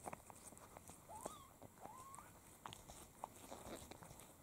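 Faint, wet clicking of a Snow Lynx Bengal mother cat licking her newborn kittens, with two short, high squeaks from a newborn kitten about one and two seconds in.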